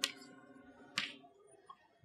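A single sharp tap of chalk against the blackboard about a second in, over quiet room tone.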